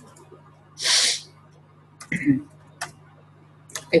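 A single short, loud breath noise close to the microphone about a second in, followed by a few scattered computer keyboard keystrokes, over a steady low electrical hum.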